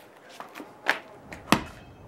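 Two sharp thuds of a thrown ball striking, about two-thirds of a second apart, the second the louder, with a few faint ticks between.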